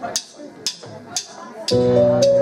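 Drummer's count-in: four sharp clicks, drumsticks struck together about half a second apart. A sustained chord from the band comes in on the beat near the end, starting the song.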